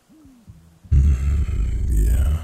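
A man's voice humming low and close to the microphone: a short rising-and-falling 'mm', then about a second in a louder, longer low hum with breath in it.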